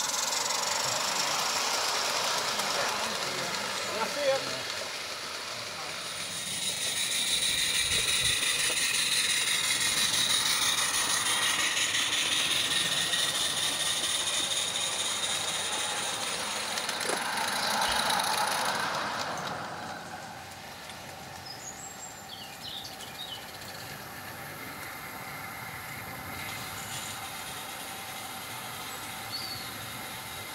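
Small live-steam garden-railway locomotive running past with its carriages: steam hissing and the wheels rattling on the track. It is loud for most of the first twenty seconds, with a sharp click about four seconds in, then quieter as the train moves away.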